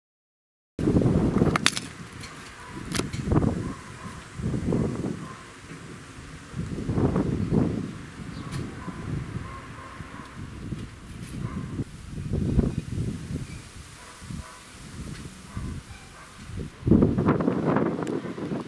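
Strong wind buffeting the microphone in irregular gusts, with a few sharp cracks, starting about a second in.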